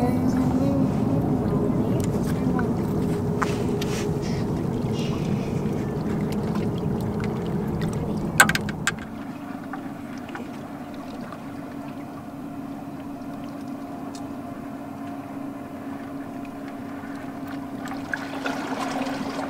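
Steady low hum over outdoor rumbling noise, louder for the first half; a sharp click about eight seconds in, after which the hum goes on more quietly.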